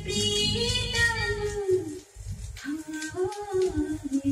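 A 1971 Hindi film song, a woman singing with instrumental backing, played from a vinyl record on a turntable. Her line breaks off about halfway through and she starts again shortly after.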